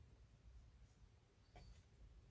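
Near silence: quiet room tone, with one faint, brief stroke of a small watercolor brush on paper about one and a half seconds in.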